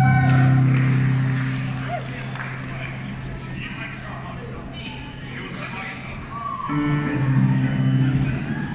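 A held final chord from the band and string orchestra fades out over the first two seconds, giving way to voices and crowd noise in the hall. Near the end another low chord sounds and is held.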